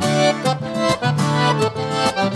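Accordion playing chords and melody over strummed acoustic guitars in an instrumental break of an upbeat sertanejo song.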